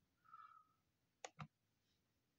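Two faint quick clicks of a computer mouse button, a little over a second in, in near silence.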